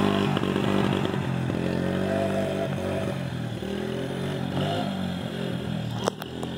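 Small Yamaha Moto-4 ATV engine running steadily at part throttle as it is ridden across the grass, getting a little fainter as it moves away toward the end.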